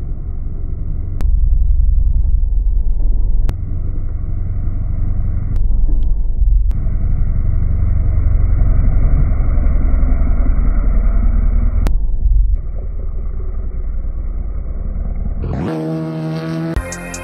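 Kawasaki ZX-10R inline-four engine and exhaust running at speed, heard muffled with almost no high end, the level jumping abruptly several times where the shots change.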